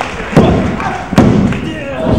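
Two heavy thuds on a wrestling ring's mat, a little under a second apart, with shouts from the crowd around them.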